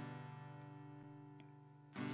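A chord on an acoustic guitar ringing out and slowly fading away, with a faint tick or two about halfway through.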